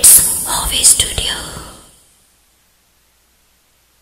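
A loud, breathy whispered intro sound effect with hissy sweeps, strongest at the start and fading away within about two seconds.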